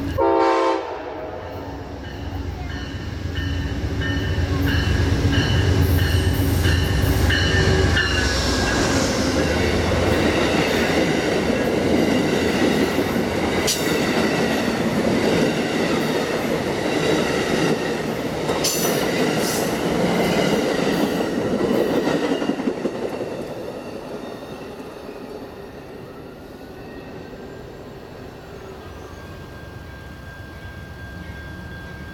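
Amtrak passenger train's horn sounding as it approaches at speed, its pitch dropping as the locomotive passes about eight seconds in. The passenger cars then rush by with rolling wheel noise that fades away after about 23 seconds.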